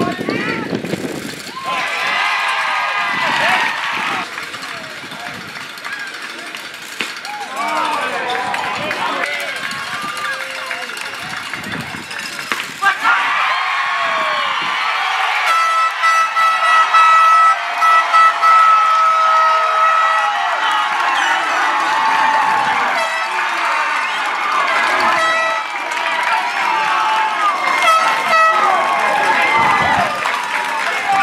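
Baseball crowd and players cheering and shouting, jumping sharply louder a little before halfway as the final out ends the game and the winning team rushes the field. An air horn blows a steady chord for several seconds in the middle of the cheering.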